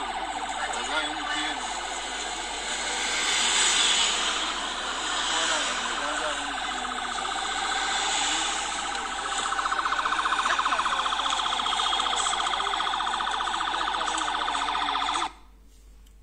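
Siren and road noise from a video filmed in a moving vehicle, heard through a phone's small speaker, so thin with no low end. It cuts off suddenly about a second before the end.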